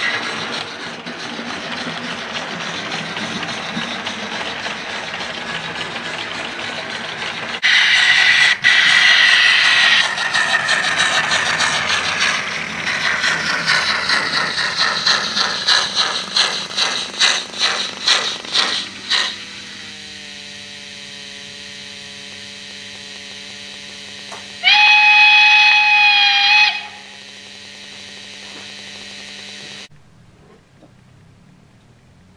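Steam locomotive sounds: a steady hiss of steam, then a louder blast of steam, then exhaust beats that quicken as the engine pulls away. After that comes a steady low hum, and a steam whistle blows for about two seconds near the end.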